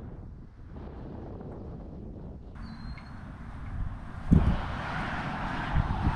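Outdoor background noise: a steady low rumble with a noisy hiss above it, which becomes louder about four seconds in, starting with a low thump.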